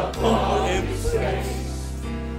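Gospel music: a choir singing over steady accompaniment, settling into a sustained chord between the sung lines.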